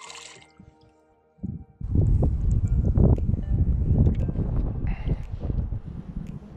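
Wind buffeting the microphone: loud, uneven low noise that sets in suddenly about two seconds in, over faint background music.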